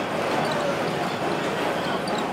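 Old trolley car in motion, heard from on board: a steady running noise with a few faint, short high squeaks.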